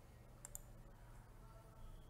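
A faint computer mouse click about half a second in, over near silence with a low steady hum.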